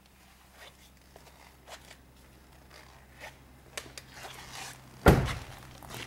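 Light rustling and handling noises, then a car door shut with a heavy thunk about five seconds in, the loudest sound.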